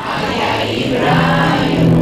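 Music with a group of voices singing together, holding long steady notes.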